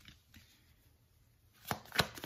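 A deck of tarot cards being shuffled by hand: a couple of faint card clicks, then, from about a second and a half in, a rapid run of sharp card slaps and clicks.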